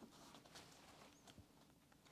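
Near silence, with a few faint soft taps from a deck of tarot cards being handled.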